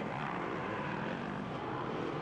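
A pack of off-road racing motorcycles running together, their engines blending into a steady drone, with one engine revving up in the mix.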